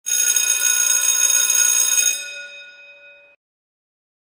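A bright ringing chime sound effect for a logo intro, many bell-like tones at once, sounding steadily for about two seconds, then fading and cutting off suddenly.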